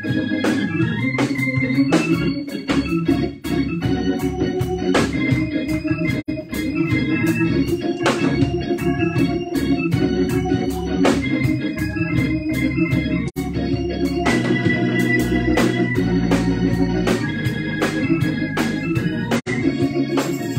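Organ-style music from an electronic keyboard, sustained chords changing every second or two over a regular beat: church "marching music" for the offering.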